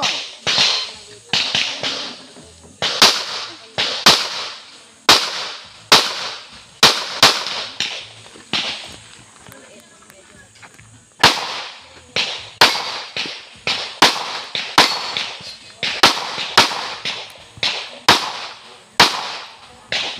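Rapid pistol shots from a practical-shooting stage run, about thirty in all, often fired in quick pairs, each ringing out briefly. There is a gap of a few seconds near the middle while the shooter moves to a new position.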